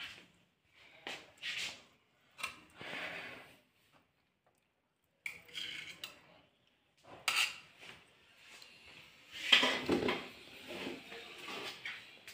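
Metal spoon clinking and scraping against plates and a pot as rice and stew are served out, in short separate clatters with quiet gaps between; the loudest clatter comes late.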